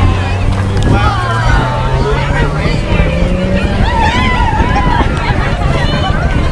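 Car engine held at steady high revs, stepping up slightly in pitch about a second and a half in, with people's voices over it.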